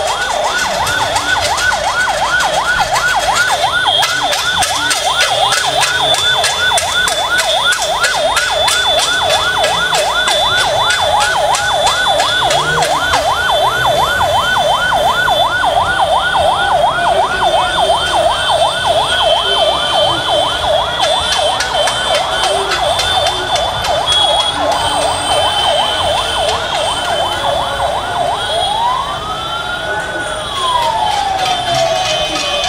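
Emergency vehicle's electronic siren in a fast yelp, its pitch sweeping up and down about three times a second, switching near the end to a single slow wail that rises and falls.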